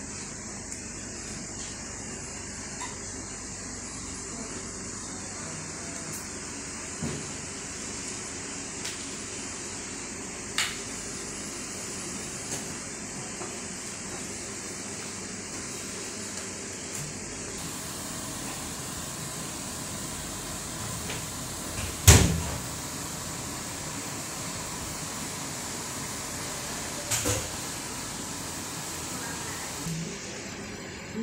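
Steady hiss throughout, with a few short knocks and clatters, the loudest about two-thirds of the way through and a quick double knock near the end.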